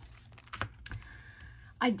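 A few light clicks and taps as a card in a clear plastic sleeve is handled and set down on a tabletop; a woman starts speaking near the end.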